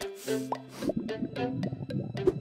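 Light cartoon background music with a few short, quick plop sound effects, one about half a second in and another just before the one-second mark.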